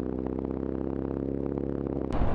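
Motorcycle engine running at steady revs, one even unchanging note, with faint light ticking over it.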